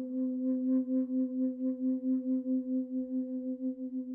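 Flute holding one low note with a slow, even vibrato of about five pulses a second, beginning to fade out near the end.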